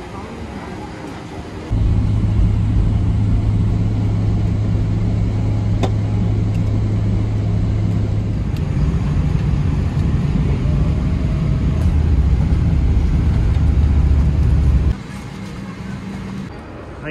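Steady loud drone of an airliner's jet engines and airflow heard inside the passenger cabin in flight, with a low hum that shifts pitch partway through. It begins suddenly a couple of seconds in and cuts off near the end.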